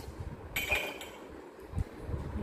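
Dishes clinking in a dishwasher rack as a ceramic mug is handled: one sharp, ringing clink about half a second in and a short knock near the end.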